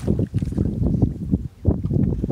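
Wind buffeting the microphone over water splashing as a bamboo punting pole is pushed into the water beside a wooden canoe. The noise comes in irregular gusts, mostly low-pitched, with a brief lull about one and a half seconds in.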